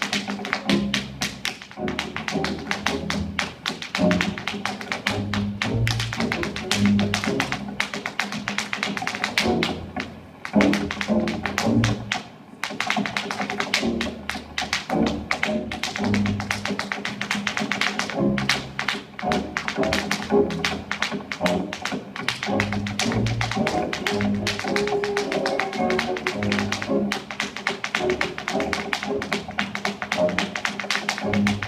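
Tap shoes beating out rapid, continuous footwork on a portable wooden tap board, over recorded music.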